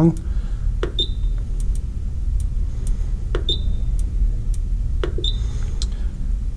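The roller dial of a Rain Master Eagle Plus irrigation controller being turned and pressed while the date is set: scattered light clicks, with three short high beeps from the controller about a second in, midway and near the end. A steady low hum runs underneath.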